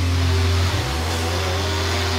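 McCulloch Mac 3200 two-stroke chainsaw running steadily as it cuts.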